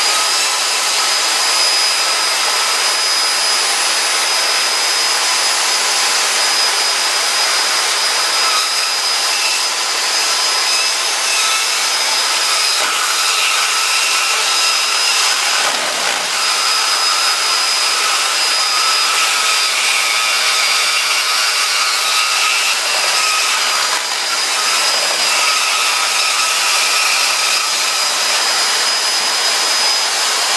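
Bandsaw running steadily at full speed: a loud hiss with one high, steady motor whine. From about the middle on, a rougher wavering tone comes and goes as the blade cuts into an iPhone 3GS.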